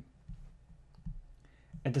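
Near-silent room tone with a few faint, soft clicks, then a man's voice starts near the end.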